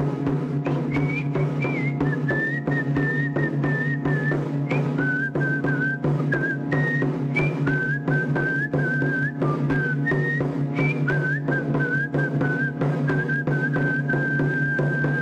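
A man whistles a simple melody that steps up and down in pitch, holding a long note near the end. He accompanies himself with a steady beat of about three strokes a second on a small rope-laced, double-headed hide drum struck with a stick.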